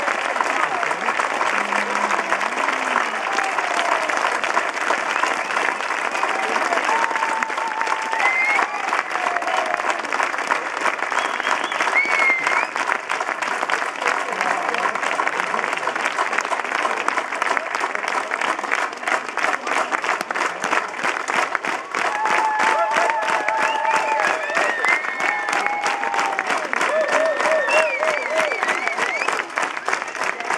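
Large concert audience applauding, with scattered shouts and calls from the crowd; in the second half the clapping falls into a steady, even beat.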